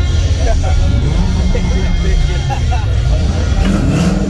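Two drag-racing cars' engines rumbling loudly at the start line while staged for a launch, one revving higher near the end, with spectators' voices over them.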